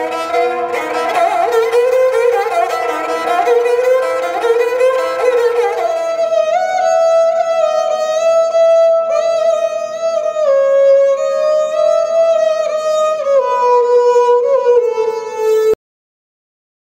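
Sarangi, a bowed short-necked fiddle, playing a melody of sliding, held notes. About six seconds in, the sound changes to a different recording with a cleaner single line. The sound cuts off abruptly just before the end.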